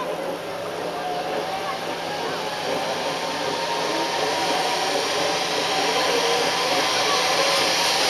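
Zip line trolleys running down two taut cables, a steady whirring hiss that grows louder as the riders come closer.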